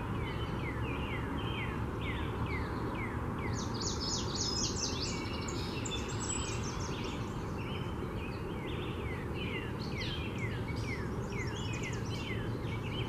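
Songbirds singing: one bird repeats short downslurred chirps at about three a second, and a second, busier, higher-pitched song joins between about four and six seconds in, over a steady low background rumble.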